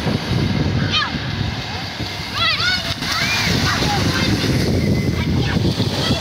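Shallow surf washing in and children splashing as they run through it. High children's shouts come about a second in and again around two and a half to three seconds.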